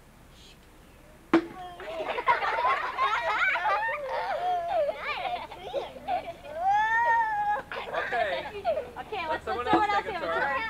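A group of young children shouting and squealing excitedly over one another, with one long rising-and-falling squeal near the middle. A single sharp knock just over a second in starts the noise.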